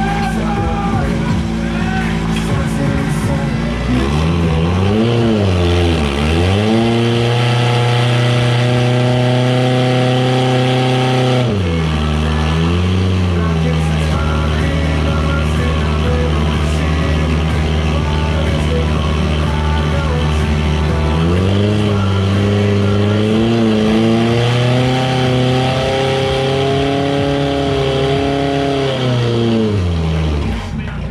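Portable fire pump's engine running hard, pumping water out through the attack hoses. Its pitch holds steady for long stretches but sags and recovers about five seconds in, again around twelve seconds, and wavers a few more times after twenty seconds as the throttle and load change.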